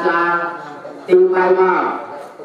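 A man's voice chanting through a microphone in two long drawn-out notes, the second starting about a second in.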